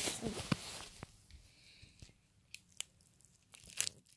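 Clear plastic bag of small candies handled close to the microphone: crinkling with a few sharp clicks scattered through it.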